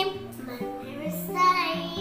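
Background music with a steady bass line, and a young child's voice briefly over it about a second and a half in.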